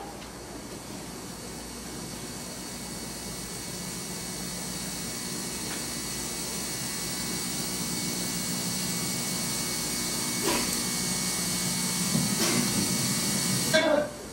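A steady hiss of noise that slowly grows louder, with two faint knocks near the end.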